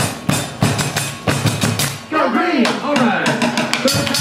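Drums struck with sticks in a fast marching-style rhythm, with voices calling over the beat.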